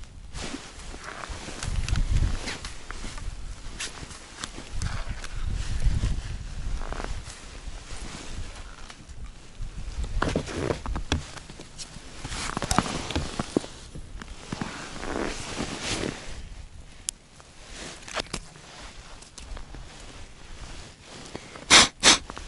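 Close handling and clothing rustle with scuffs on snow-covered ice as a bream is pulled up through an ice hole and laid on the ice, with low rumbling swells along the way. One short, loud scuff comes just before the end.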